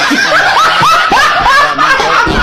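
People laughing hard: a rapid run of short, high-pitched rising laughs, several a second.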